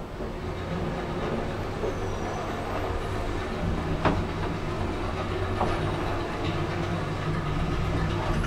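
Schlieren electric traction lift car travelling between floors: a steady low hum and rumble from the car and its drive machine, with a single knock about four seconds in.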